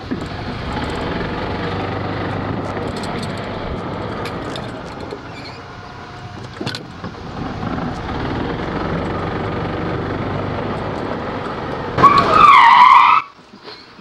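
Golf cart driving fast over grass: a steady rumble of its motor and tyres, with wind on the mounted camera. Near the end a much louder, wavering high-pitched squeal lasts about a second, then cuts off suddenly.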